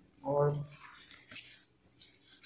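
Paper rustling as spiral-notebook pages are handled and turned, a soft irregular scraping lasting about a second in the second half.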